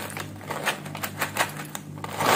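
Dry namkeen snack mix pouring from a plastic packet into a steel bowl: many small clicks as the pieces land on the metal, with some crinkle from the packet.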